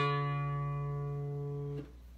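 Electric guitar notes plucked together high up the neck, ringing out and slowly fading, then damped short just before two seconds.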